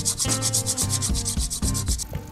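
240-grit sanding cloth rubbed rapidly back and forth over a small diecast car body, about ten short scratchy strokes a second.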